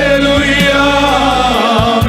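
A male choir singing a Christian worship song into microphones, voices wavering in pitch over sustained low instrumental notes.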